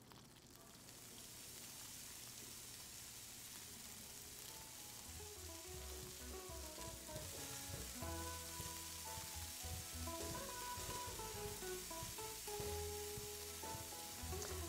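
Steak and onions sizzling on the hot grill and griddle plates of a Cuisinart Elite Griddler, a steady hiss that builds over the first couple of seconds. Soft background music comes in about five seconds in.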